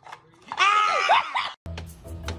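A woman's loud, high-pitched startled scream, lasting about a second and wavering in pitch, which cuts off abruptly. Background music with a steady bass beat then starts.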